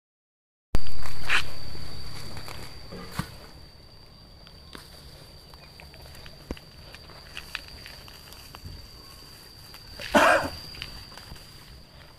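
Quiet garden ambience with a thin, steady high-pitched tone, and soft rustles and small clicks as weeds are pulled up by hand. A louder sound fades away over the first couple of seconds, and a brief louder rustle comes about ten seconds in.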